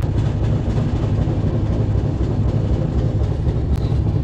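Passenger train running along the track: a steady, loud rumble of wheels on rails coming in through an open carriage window.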